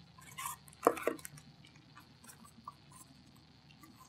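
Stacked disposable bowls being pulled apart and set down on a tabletop: a few light clacks and taps, the sharpest about a second in, then only faint scattered ticks.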